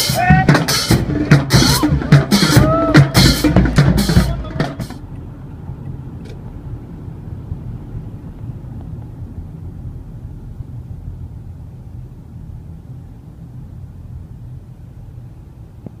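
Street drummers beating on plastic buckets and drums in a fast rhythm, with voices shouting over it, cut off suddenly about five seconds in. Then a steady low rumble of a car's road and engine noise, heard from inside the cabin.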